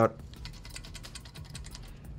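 A quick run of light clicks and ticks as a CPU tower cooler's fan and its fan clips are handled and pushed against the heatsink, the fan held firm in its clips.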